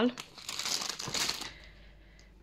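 Plastic food packaging crinkling and rustling as groceries are handled on a counter, dying away about a second and a half in.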